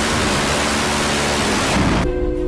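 Phalanx CIWS 20 mm six-barrel Gatling gun firing one sustained burst, heard as a continuous dense buzz rather than separate shots, that stops suddenly shortly before the end.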